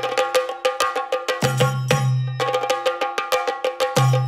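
Percussion music led by chenda-style drums: fast, evenly spaced strokes with a ringing metallic beat over them, and deeper drum hits joining about one and a half seconds in.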